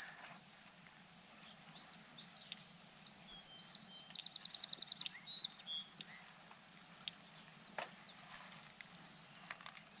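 A songbird calling faintly: short high chirps and, around the middle, a rapid trill of about a dozen notes, then a few more chirps. A faint steady low hum runs beneath, with a few faint ticks.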